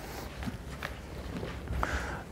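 A person's footsteps: a few soft paces across a hard floor, faint over a low steady room hum.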